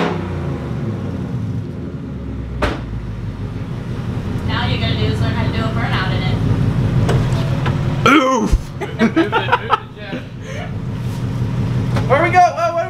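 2020 Ford Mustang GT's 5.0 Coyote V8 idling steadily through a muffler-deleted exhaust, super loud.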